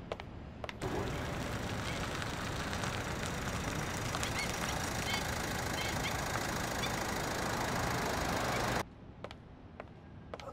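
A car running: a steady, even noise with a few faint high chirps. It starts about a second in and cuts off abruptly near the end.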